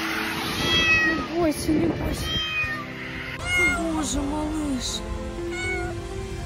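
A small kitten mewing about five times in high, thin cries, over background music.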